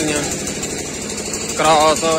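A steady low rumble like an idling engine, with a man's voice speaking briefly near the end.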